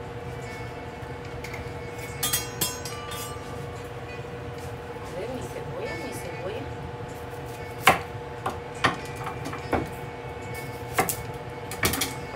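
Kitchen knife slicing an onion on a wooden cutting board: a handful of irregular sharp knocks of the blade against the board, the loudest about eight seconds in, over a steady background hum.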